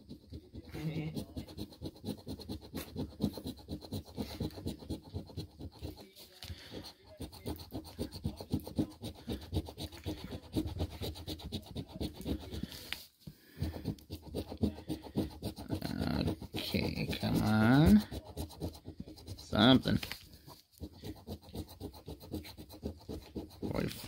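Metal coin scratching the coating off an instant lottery scratch-off ticket in rapid back-and-forth strokes, with a short pause partway through. A man's voice comes in briefly near the end.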